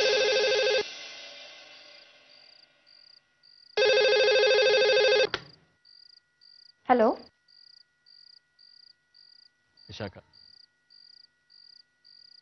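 Landline telephone ringing in two rings, the first ending just under a second in and the second lasting about a second and a half, about four seconds in; then the ringing stops as the phone is answered. A faint, regular high chirp runs underneath.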